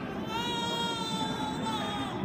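A baby's voice: one long, high-pitched cry lasting about a second and a half, falling slightly at its end.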